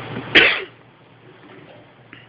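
A single loud cough about a third of a second in, short and sharp.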